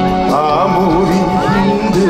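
A man singing into a microphone over a live band, holding notes with a wavering vibrato.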